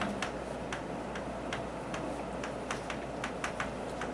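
Chalk writing on a chalkboard: irregular sharp clicks and taps of the chalk against the board, about three or four a second.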